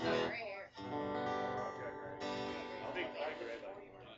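Acoustic guitars strumming chords that ring out, a new chord about two seconds in, as the lead-in to a song.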